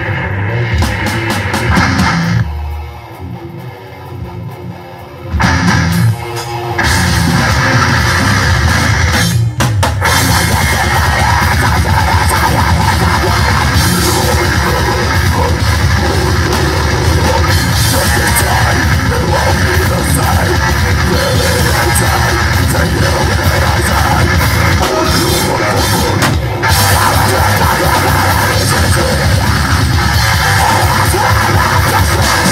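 Live heavy metal band playing a song: distorted guitars, bass and drum kit. The sound thins out a couple of seconds in, and the full band comes back in hard after about five seconds.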